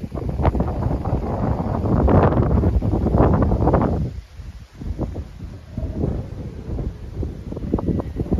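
Gusty wind buffeting the microphone, a heavy low rumble with crackling. It drops away briefly about four seconds in and builds again near the end.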